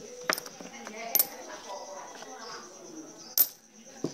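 Coins clinking as they are handled and set down on a cloth-covered table: a few sharp clinks, one shortly after the start, one about a second in and one near the end.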